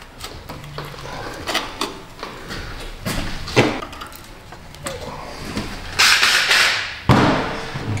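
Metal exhaust pipe pieces being handled and fitted by hand: scattered knocks and clanks, then a louder scraping noise about six seconds in and again about a second later.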